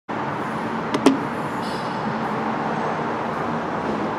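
Two sharp clicks about a second in, from an elevator call button being pressed, over a steady rumble of parking-garage background noise with a low hum.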